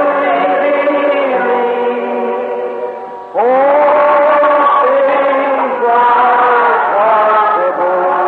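A slow hymn sung in long, held notes, phrase by phrase; a new phrase starts with an upward scoop a little over three seconds in.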